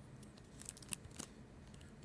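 A handful of faint, sharp clicks from computer keys, clustered between about half a second and just past a second in, over quiet room tone.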